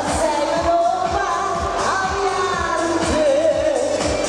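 Live schlager pop song: a woman sings into a microphone over amplified backing music with a steady kick-drum beat.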